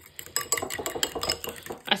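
Metal fork whisking beaten eggs in a ceramic bowl: a quick run of light clinks and taps as the fork strikes the bowl.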